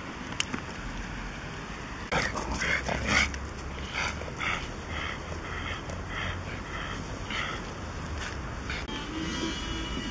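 A small dog barking over and over, about two short barks a second, starting about two seconds in and stopping near the end.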